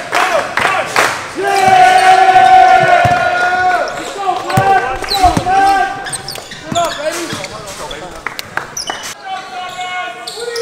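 Basketball bouncing and sneakers squeaking on a hardwood gym floor, among players' voices, with the loudest stretch in the first few seconds.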